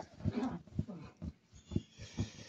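Dull low thuds, about two a second, from a black rod being worked against the sole of an oiled bare foot, with a short low vocal sound about half a second in.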